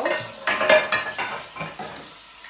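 Metal pots and pans clattering as they are shuffled about in a low kitchen cupboard, loudest about half a second in, with meat sizzling faintly as it browns in a pan.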